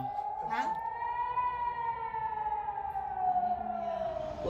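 Civil-defence air-raid siren wailing: its pitch rises slowly for about a second and a half, then falls slowly again.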